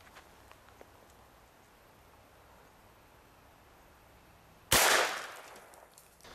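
One shot from a Henry Big Boy Steel lever-action rifle firing .44 Magnum from a 20-inch barrel, coming near the end. The sharp report fades out over about a second.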